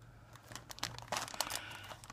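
Thin plastic parts bag crinkling in the hands as a sealed bag of model-kit parts trees is handled, with irregular crackles starting about half a second in.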